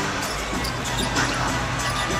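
A basketball being dribbled on a hardwood court, a few short bounces over steady arena noise. Music-like tones fade out right at the start.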